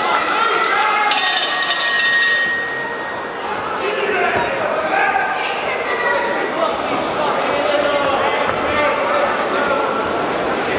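A boxing ring bell is struck in a rapid run of strokes about a second in and rings on briefly, starting the round. Crowd voices and shouts carry on underneath.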